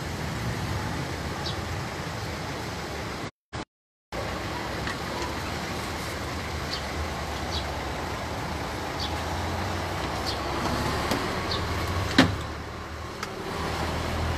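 Steady background rumble with a low hum and faint short high-pitched chirps every second or so. The sound cuts out completely for under a second about three seconds in, and there is a single sharp knock about twelve seconds in.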